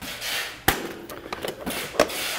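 A short rustle, then a sharp click about two-thirds of a second in, followed by a few lighter ticks: handling noise from things being moved about.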